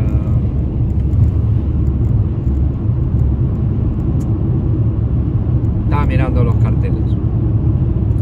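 Steady low rumble of road and engine noise inside a moving car's cabin. A brief vocal sound comes about six seconds in.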